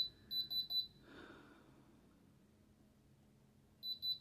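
Diamond Selector II tester beeping in rapid pulses of a high-pitched tone, two short runs in the first second and again near the end, as its probe touches the ring's stones: the beep of a positive diamond reading.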